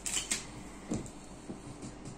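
Plastic packaging rustling as a Lego minifigure packet is handled, then a few light clicks of small plastic parts.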